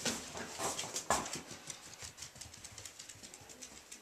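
A Jack Russell Terrier puppy's claws clicking and scrabbling on a bare wooden floor and sill: a quick run of light ticks, with louder knocks right at the start and about a second in, growing fainter toward the end.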